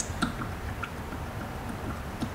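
Engine oil pouring slowly from a thin-necked plastic jug into an engine's oil filler, heard quietly as faint gurgling with a few soft clicks.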